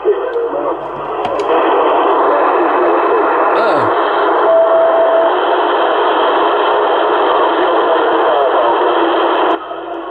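Yaesu FT-450 transceiver receiving AM on CB channel 26 (27.265 MHz) with its BHI DSP noise-reduction filter switched off: loud, steady static and interference (QRM) with weak voices buried in it, and a short steady whistle near the middle. The noise swells up about a second and a half in and cuts off suddenly just before the end.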